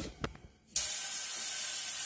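Stainless-steel handheld bidet sprayer shooting a strong jet of water into a toilet bowl. It starts suddenly about a third of the way in as a steady hiss.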